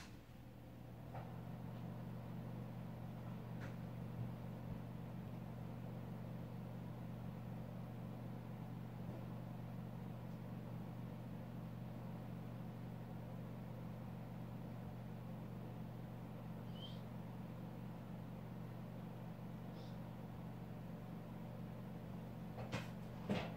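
Steady low machine hum that starts about a second in, with a few faint clicks over it.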